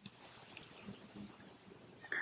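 Very faint rustles and small clicks of hands handling a spool of flat embossed tinsel during fly tying; otherwise close to silence.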